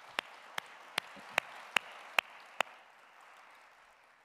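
Applause after a speech: a steady patter of clapping with seven loud, close claps at about two and a half a second standing out over it, the whole fading out near the end.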